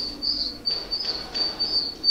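A high chirping that holds one pitch and pulses on and off unevenly, running on in the background.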